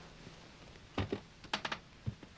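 A few short knocks and rustles as several people sit down on a wooden throne and floor seats: one knock about a second in, then a quick run of three near the end.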